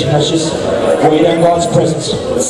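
A man's voice speaking loudly and without pause, amplified through a sound system in a large hall.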